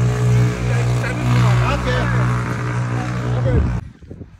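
A loud, steady low hum from an engine or motor, with people's voices chattering over it; it cuts off suddenly near the end.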